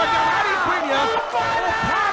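A man shouting a drawn-out, high-pitched 'Opana!' in victory celebration, with crowd noise behind.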